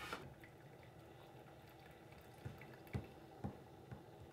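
Near silence: quiet room tone with three faint, short taps between about two and a half and three and a half seconds in.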